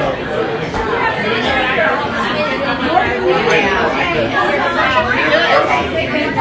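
Crowd chatter: many voices talking at once in a packed room, with no single voice standing out.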